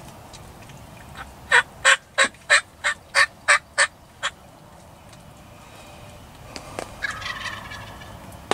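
Turkey yelping: a run of about nine sharp, loud yelps at about three a second, then a softer, rougher call near the end.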